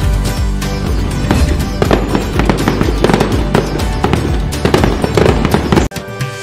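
Festive background music with firework sound effects laid over it: repeated bangs and crackling, growing denser about a second in, with a short break just before the end.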